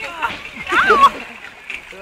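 Water splashing and churning around a small boat on a water-ride channel, with a loud, high voice crying out about a second in.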